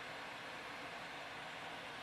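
Low, steady hiss of room tone and microphone noise, with no distinct event.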